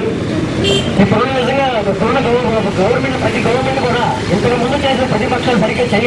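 A man speaking into a handheld microphone, talking continuously without pause.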